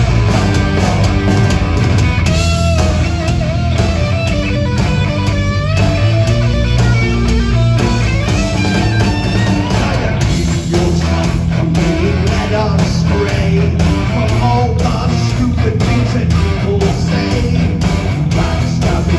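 Heavy metal band playing live: distorted electric guitar, bass and drums, heard loud from among the crowd.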